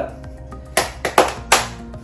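Three sharp strikes in quick succession, about 0.4 s apart, in the second half, over steady background music.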